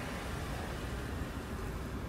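Steady low rumble of street traffic, with a car driving past close by.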